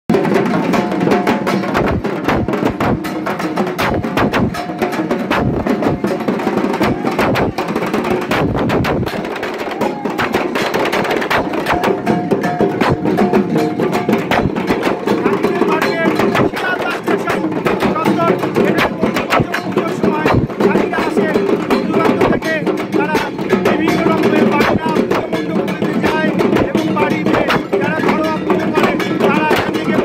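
Many dhak and dhol drums played together by a crowd of drummers: a dense, unbroken stream of rapid stick strokes on the drumheads, with voices mixed in.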